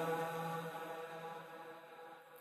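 The fading reverberant tail of a sung note between two phrases of a vocal track: the held pitch and its echo die away steadily, growing very quiet by the end.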